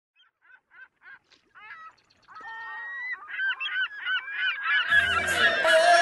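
A flock of birds calling: short calls that each bend in pitch, sparse and faint at first, then overlapping, denser and louder. About a second before the end, a low hum and a wash of noise come in underneath.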